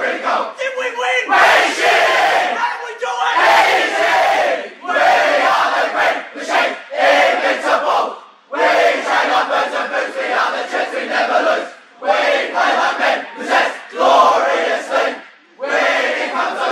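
A team of young footballers, arms linked in a huddle, chanting and singing their club song together at full voice. The loud group phrases are broken by brief pauses.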